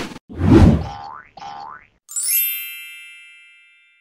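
Logo intro sound effects: a low whoosh, then two quick rising boings, then a bright chime about two seconds in that rings on and fades away.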